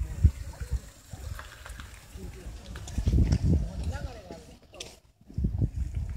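Indistinct voices with low rumbling bursts, loudest at the start, around the middle and again near the end.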